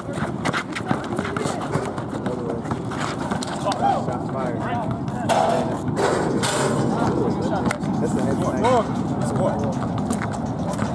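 Outdoor pickup basketball: indistinct voices of players and onlookers calling out, over a run of short sharp knocks from a basketball dribbled on the asphalt court and sneakers on the blacktop.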